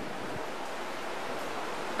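Steady hiss of background noise with no other sound: a pause in a man's speech.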